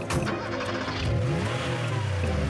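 Cartoon monster-truck engine sound effect revving, rising in pitch a little past halfway, just after a short bang of the truck door shutting at the start.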